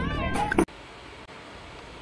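A woman's voice trails off in a gliding, up-and-down tone and cuts off abruptly about two-thirds of a second in. A faint steady hiss follows.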